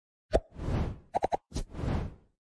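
Animated logo-sting sound effects: a sharp hit, a swelling whoosh, three quick clicks, then a second hit and whoosh near the end.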